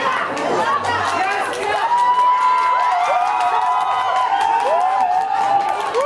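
Heated shouting match in Korean: several people yelling over one another in a crowded room, one voice holding a long, loud yell through the middle.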